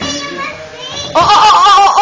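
A small child's voice: some babbling, then about halfway through a loud, high, wavering squeal.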